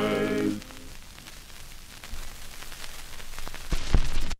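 The last chord of a gospel vocal group with piano dies away about half a second in. What follows is the surface noise of a 78 rpm shellac record: steady hiss and crackle, with a few low thumps near the end.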